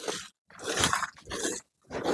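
A dog barking in a run of short, rough barks, about two a second.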